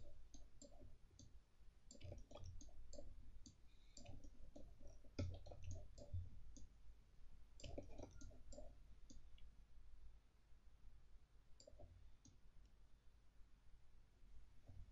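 Faint, irregular clicking of a computer mouse, in scattered clusters, with a quieter gap about ten seconds in.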